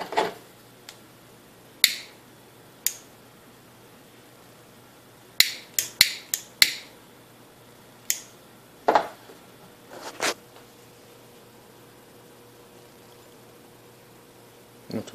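Scattered sharp taps and clicks, a dozen or so, bunched about five to seven seconds in, as small hard objects are handled and set down on a workbench, over a faint steady hum.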